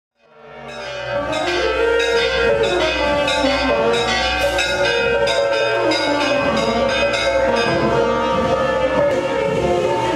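Many temple bells ringing continuously together, struck over and over so that their tones overlap, fading in over the first second or so.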